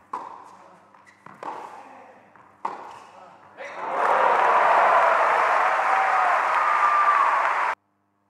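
Tennis ball struck by rackets in a rally, three hits about a second and a half apart, then a crowd breaks into cheering and applause as the point is won. The crowd noise cuts off abruptly near the end.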